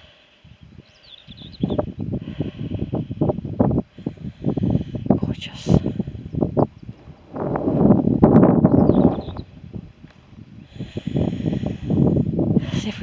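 Wind buffeting the microphone in irregular gusts, a rumbling rush that is strongest about two-thirds of the way through. Faint bird chirps come through twice.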